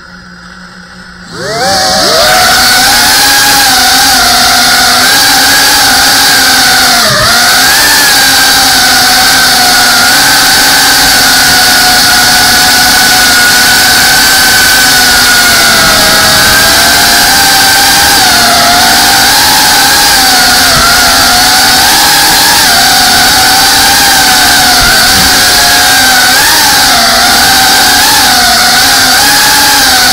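FPV racing quadcopter's motors and propellers spinning up about a second and a half in. After that comes a loud, steady whine with several pitches that waver up and down together as the throttle changes in flight. It is heard close up from the drone's onboard camera.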